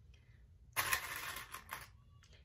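Rustling of stretch knit fabric being handled and shifted on a cutting mat, a loud, uneven rustle lasting about a second that starts a little before the middle.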